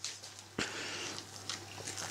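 Faint, soft squishing and scraping of a spoon folding whipped egg whites into a thick curd-cheese mixture in a glass bowl, with a light click about half a second in and a low steady hum underneath.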